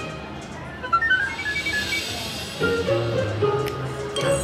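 Electronic music from a Willy Wonka video slot machine, played as it shows the total win at the end of its Slugworth bonus: a run of short high notes about a second in, then lower, longer notes.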